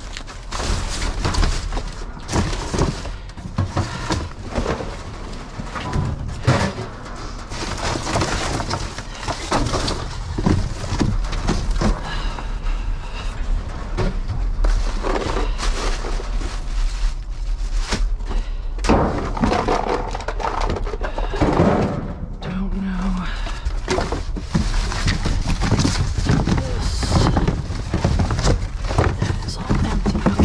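Cardboard boxes and scrap being shoved, dragged and tossed about inside a metal dumpster: continuous rustling and scraping of cardboard with irregular thuds and clunks.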